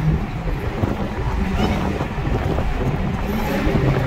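Dodge Charger SRT Hellcat's supercharged V8 running at a steady cruise, heard from inside the cabin with the windows down under a steady rush of wind and road noise. The engine's low drone comes up more clearly near the end.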